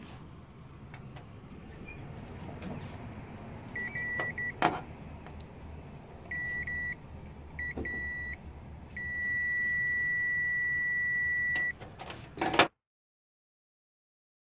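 ANENG Q1 multimeter's continuity buzzer beeping as the probes touch the solder pads of an LED backlight strip connector: four short beeps, then one steady beep of about two and a half seconds, signalling a closed, good connection. A couple of sharp clicks from the probes being handled.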